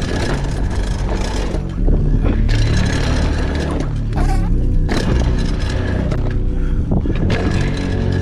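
Wind rushing over a bike-mounted camera's microphone and a dirt-jump bike's tyres rolling and scraping over packed dirt, with several sharp knocks and rattles from the bike as it takes the jumps.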